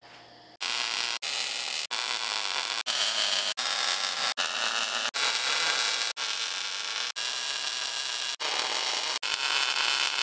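Welding arc crackling and hissing steadily as step notches are tack-welded onto a steel truck frame rail, broken by brief gaps about once a second.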